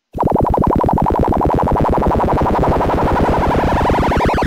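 Soundgin synthesizer chip producing a complex modulated distance-indicator sound: a rapid pulsing of about 13 beats a second, with a higher wavering tone that climbs steadily in pitch as the simulated robot closes on the wall.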